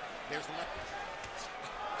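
A few short, dull thuds from the boxing ring in the second half, over steady arena crowd noise.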